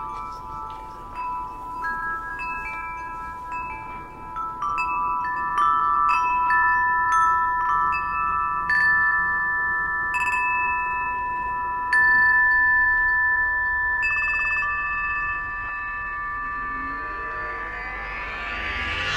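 Wind-chime-like ringing: several clear, high tones held and overlapping, with new notes struck every second or two. Near the end a rising whoosh sets in.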